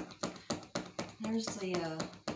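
Acrylic paint marker being pumped tip-down against paper, tapping about four times a second, to prime the valve tip and start the paint flowing. A voice murmurs over the taps in the second half.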